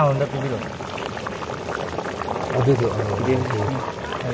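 Curry boiling hard in a large wok over a wood fire, a steady bubbling, with people's voices talking over it.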